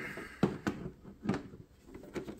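A few light clicks and knocks from a metal Pokémon card tin being handled as its lid is worked open, the lid resisting.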